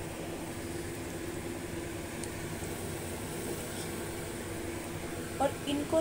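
Lauki (bottle gourd) koftas deep-frying in hot oil in a kadhai, a steady sizzle.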